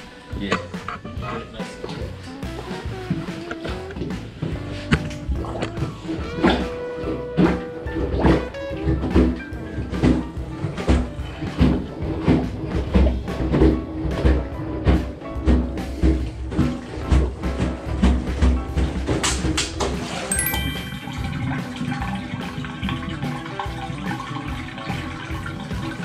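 Background music over a plunger being worked on a clogged bathtub drain in standing water. Water sloshes and sucks in regular strokes about once a second through the middle of the stretch.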